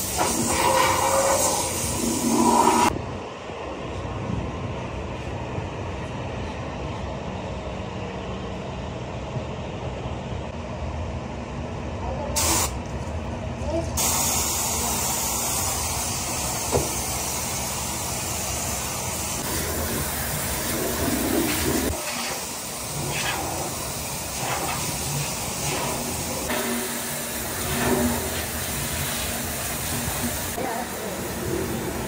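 Compressed-air spray gun hissing steadily as it sprays a coating onto a ceramic toilet. The hiss changes abruptly several times.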